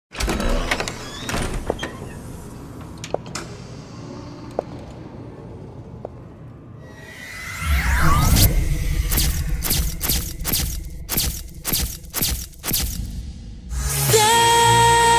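Trailer sound effects: scattered clicks over a low rumble, a rising whoosh about seven seconds in, then a quick run of sharp hits, a few a second.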